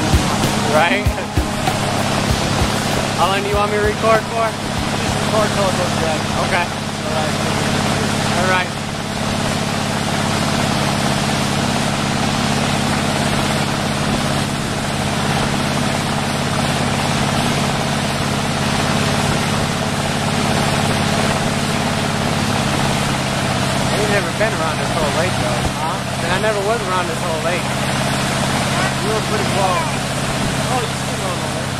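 Tow boat's engine running steadily at towing speed, with the rush of wind and wake water around the boat.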